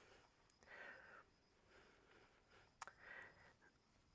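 Near silence, with two faint short scrapes of a knife edge drawn across a wet Japanese Iwatani natural whetstone, about a second in and about three seconds in.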